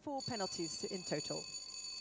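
Show-jumping arena start signal: a steady, high electronic ring held for about two and a half seconds and then cut off abruptly, signalling the next rider that the start countdown is running.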